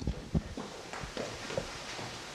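Footsteps hurrying down auditorium stairs: a string of uneven thuds, about five or six in two seconds.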